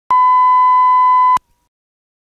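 Videotape line-up tone that plays with colour bars: a steady, loud 1 kHz reference tone lasting just over a second, which cuts off suddenly.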